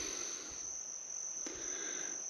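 Insects trilling steadily: one continuous high-pitched tone over faint outdoor background hiss.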